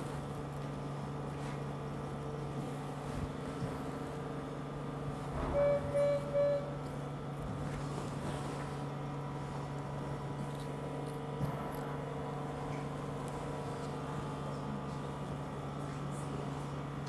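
Steady low electrical hum of surgical-room equipment, with three short electronic beeps in quick succession about six seconds in.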